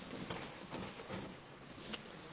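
Quiet room tone: a pause with only faint, even background noise and no distinct sound.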